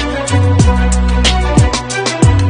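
Background music with a steady beat and deep bass notes that slide down in pitch.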